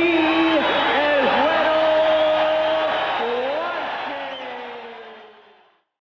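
A man's voice calling out in long, drawn-out tones with dips in pitch, fading out about five seconds in.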